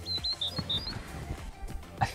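Background music, with a few short high chirp-like notes in the first second and scattered light clicks.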